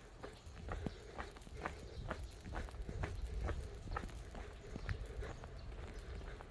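Footsteps of a person walking on paving, about two steps a second, over a low rumble of wind and handling on the phone's microphone.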